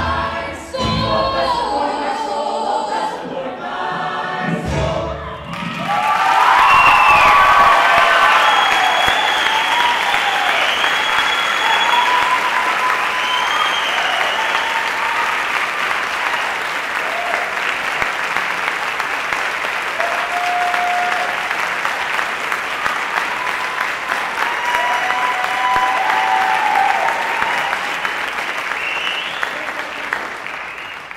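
A sung musical number with band accompaniment ends about five seconds in, and a theatre audience breaks into loud applause with scattered cheers and whoops. The applause holds steady and eases off near the end.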